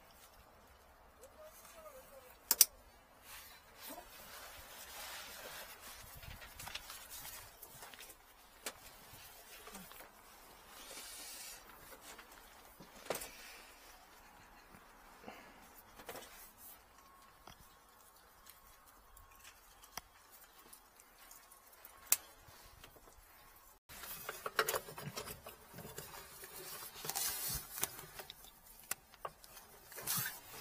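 Faint handling noise from gloved hands working with electrical wiring and plastic connectors: soft rustling with scattered clicks, the sharpest about two and a half seconds in. It drops out briefly near the end, then comes back as louder rustling.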